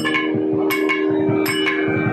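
Ensemble accompaniment with the lead melody paused: a steady drone, a quick run of low drum strokes, and a few bright, ringing metallic strikes.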